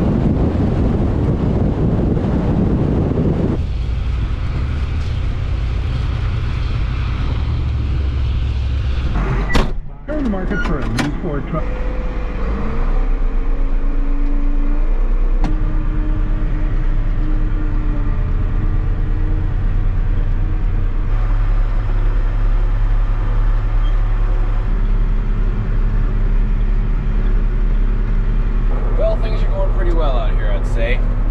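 Pickup truck driving across a stubble field, its engine and tyres a steady rumble. About ten seconds in the sound cuts off suddenly; an engine revs up in rising pitch and then settles into a steady low diesel drone, the John Deere 8870 tractor heard from inside its cab.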